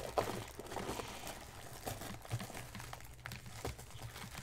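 Plastic wrap on a takeout broth container crinkling and crackling as fingers pick at it and peel it open, close to the microphone, in scattered small clicks and crackles.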